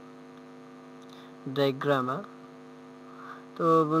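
Faint, steady electrical hum of constant pitch in the microphone recording.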